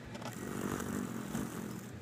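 A hummingbird fluttering its wings, a rustling whir lasting about a second and a half.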